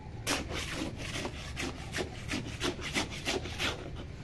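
Steel hand trowel scraping and spreading wet sand-cement mortar over a buried PVC pipe, in quick repeated strokes about four a second.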